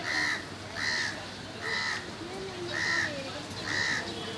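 A bird calling five times, about once a second, each call short and repeated the same way.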